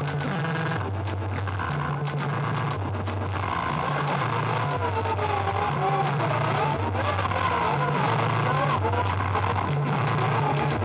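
Live experimental noise music played on a tabletop rig of electronics and effects pedals: a repeating low bass figure steps back and forth between two notes under a dense, noisy wash. About three or four seconds in, a wavering, warbling tone joins it.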